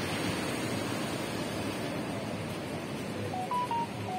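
Atlantic surf breaking and washing over rocks below a sea wall, a steady rush of waves. Near the end, a few short, high, whistle-like beeps at slightly different pitches sound over it.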